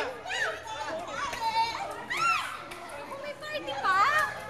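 A group of children and adults shouting and cheering excitedly, with short high-pitched calls that glide up and down.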